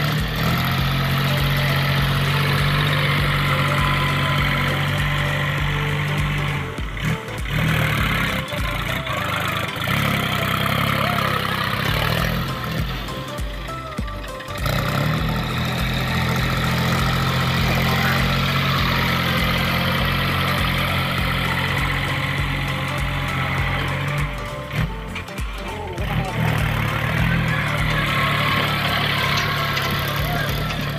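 A New Holland 3630 tractor's diesel engine runs under load as it pushes soil with a front levelling blade, mixed with a song with singing. The sound drops out briefly three times.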